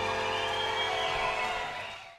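A live blues-rock band's final chord sustaining as steady held tones, then fading away near the end.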